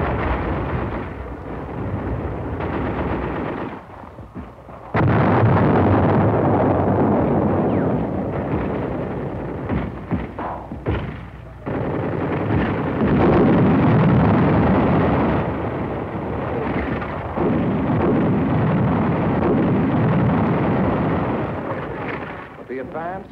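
Battle noise: a dense, continuous din of rifle and machine-gun fire mixed with artillery shell bursts. It drops off briefly about four seconds in, comes back suddenly and loud about five seconds in, and jumps up again sharply near the middle.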